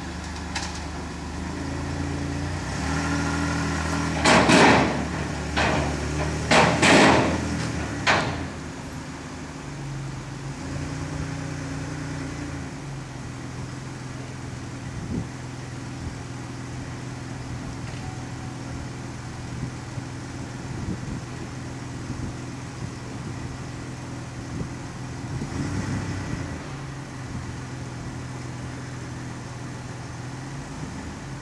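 Motor vehicle engines running while a sedan is driven up the ramp onto the top deck of a car-carrier trailer, giving a steady low hum. Several loud, noisy bursts come between about four and eight seconds in.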